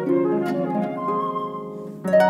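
Flute and concert harp duo playing classical music: plucked harp notes with a long held flute note entering about halfway through, the sound easing off toward the end.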